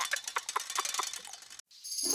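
Cartoon sound effect of a bicycle's freewheel ticking as the bike coasts: a run of quick, light clicks that fade away and stop shortly before the end.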